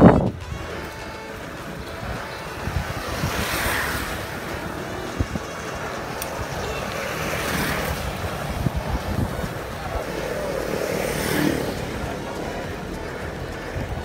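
Wind buffeting the microphone of a camera riding on a moving bicycle, a steady rushing noise that swells in gusts about three times.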